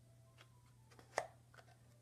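Faint handling noise of a Caframo Tiny Tornado handheld fan being pushed back into its soft rubbery sleeve. A few light rubs and ticks lead to one sharper click about a second in as the fan seats.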